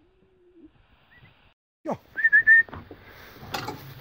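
A short whistle: a quick falling swoop, then three quick rising notes, with a few soft knocks near the end.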